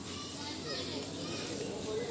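Indistinct chatter of several people's voices, children's among them, over a steady background hum, with no clear words.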